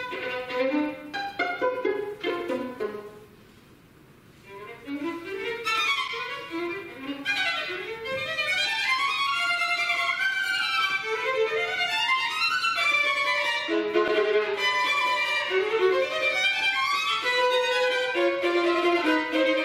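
Violin playing fast runs of notes, many climbing upward, dropping to a soft passage about three seconds in and then growing louder again, full and steady from about eight seconds on.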